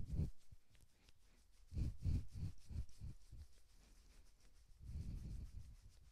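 Hands rubbing up and down bare upper arms: faint, soft brushing strokes in a quick run around two seconds in, and again more softly near the end.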